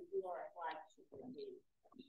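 Faint, muffled speech from a person talking well away from the microphone, in short phrases.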